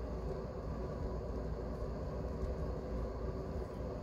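Steady low background noise with a faint hum: quiet room tone.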